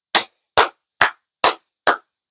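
One person clapping hands in a steady rhythm, five sharp claps a little more than two a second.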